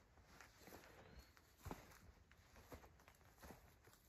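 Faint footsteps on clover and sandy soil, a few soft steps spread over a few seconds, over near silence.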